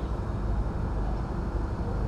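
A steady low rumble of background noise, even and unchanging, with no voice in it.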